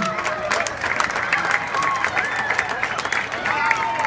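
Crowd of spectators clapping and cheering, with scattered sharp claps and high-pitched shouts over a steady background of voices.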